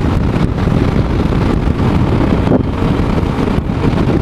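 Steady wind rushing and buffeting over the microphone of a camera mounted on a Yamaha Ténéré 250 motorcycle riding at highway speed, with road and engine noise beneath.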